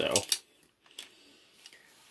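A few light metallic clicks from a handmade Freddy Krueger bladed glove as it is turned over by hand: the steel blades and riveted finger pieces knocking together, with the sharpest click about a second in.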